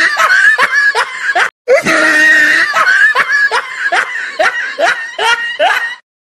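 High-pitched laughter in quick, repeated rising bursts of about three a second. It breaks off briefly about one and a half seconds in, then resumes.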